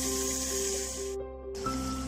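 Background music: a simple melody of held notes over a steady low drone. Under it runs a high hiss of shrimp frying in a wok, which drops out briefly just after the middle.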